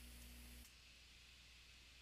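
Near silence: faint room tone with a low steady hum that cuts off under a second in.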